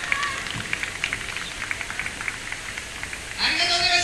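Outdoor concert crowd in a break in the music: scattered clapping and voices. About three and a half seconds in, amplified music with long held notes comes back in loudly.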